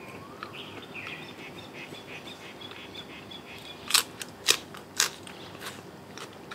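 Birds chirping faintly, then three loud, sharp crunches about four to five seconds in from chewing crisp raw bitter gourd.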